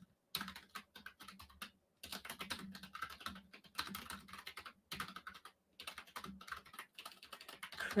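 Typing on a computer keyboard: rapid runs of keystrokes with brief pauses about two and five seconds in, as a search query is typed.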